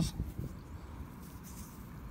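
Faint crumbling and rustling of damp soil and straw stubble as fingers pick a small metal disc out of a clod, a few soft ticks in the first half second. After that only a steady low outdoor rumble remains.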